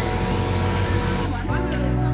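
A boy laughs briefly over a steady rushing background noise. About a second and a half in, this gives way to background music with sustained low chords.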